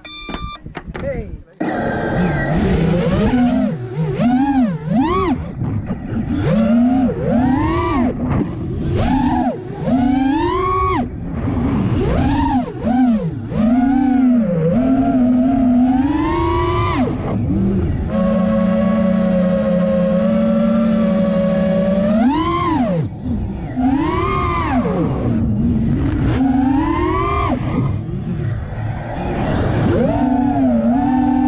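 Motors of a home-built FPV racing quadcopter whining in flight, the pitch swooping up and down over and over as the throttle is worked. The tone holds steadier for a few seconds around the middle.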